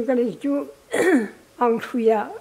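An elderly woman speaking in short phrases, with a brief breathy, noisy sound about a second in, like throat clearing.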